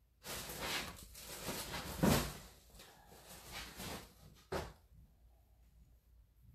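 Rummaging and rustling while a handful of polyfill stuffing is pulled out of a container, with a louder thud about two seconds in. A single short knock follows at about four and a half seconds.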